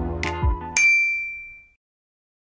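The tail of electronic background music, then a single bright bell-like chime, a ding, about three-quarters of a second in, which rings out and fades over about a second.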